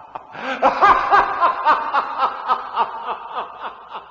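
A person laughing in a steady run of short 'ha' bursts, about four a second, growing louder about half a second in.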